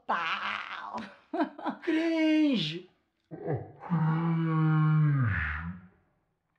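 Voices making drawn-out, mock-rock vocal sounds: a short call, a held note sliding down in pitch, then a long low held note that sinks into a growl near the end.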